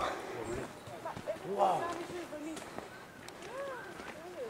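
Faint, indistinct voices: a few short utterances at low level, about one and a half and three and a half seconds in.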